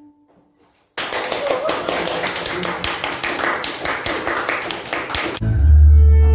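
After a near-silent second, a small audience applauding. Near the end the applause is cut off abruptly by music with a deep bass.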